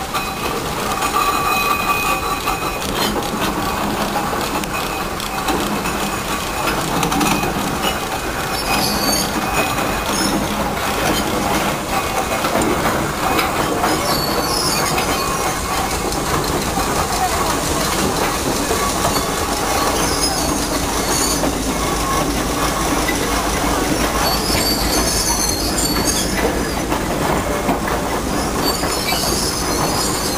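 Vintage steam road rollers driving past one after another, their steam engines and heavy iron rolls making a steady, loud mechanical running and rumbling, with brief high-pitched sounds every few seconds.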